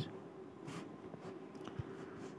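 Faint brief scratch of a tick mark being drawn on a phone touchscreen, over low room hiss, with a tiny tick near the end.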